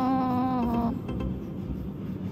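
One long, steady animal call with a slightly falling pitch, lasting over a second and ending about a second in.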